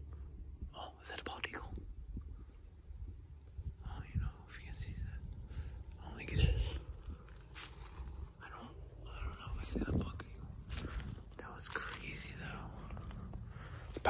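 Footsteps crunching over dry field stubble and weeds, with rustling and quiet whispering in between.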